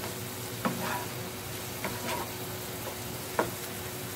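Beef mince with peppers and tomato sauce sizzling in a frying pan as a wooden spatula stirs it, with a few sharp knocks of the spatula against the pan, the loudest near the end.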